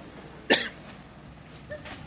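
A single short, sharp burst of noise about half a second in.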